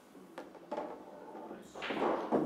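Faint knocks of a rolling pool cue ball striking the table's cushions, with one sharp click a little under half a second in.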